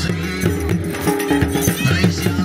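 Dhol drums beating a fast, even dance rhythm under a held, stepping pipe melody: live music played for a dancing horse.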